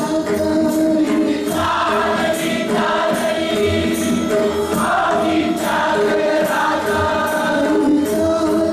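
A congregation singing a devotional arati hymn together in chorus. Beneath the voices run steady held tones and a regular percussive beat.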